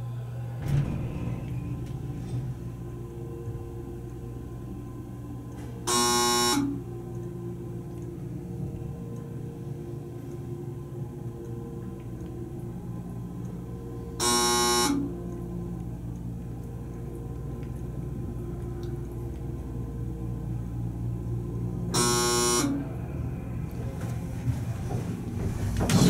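Hydraulic elevator car running with a steady low hum. A buzzy electronic signal tone sounds three times, about eight seconds apart, each under a second long, as the car passes floors.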